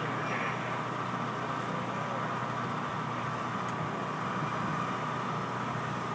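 A steady mechanical hum with a constant tone, engine-like, over outdoor background noise.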